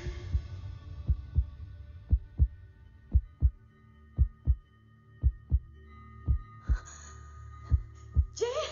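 Heartbeat sound effect in a film soundtrack: low paired lub-dub thumps, about one beat a second, over a steady low drone.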